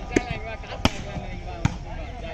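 Three sharp smacks of a hand slapping a volleyball, about one every 0.8 seconds, as a server readies the ball before serving, with voices in the background.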